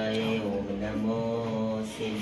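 Devotional mantra chanting by voices over a steady, held drone note.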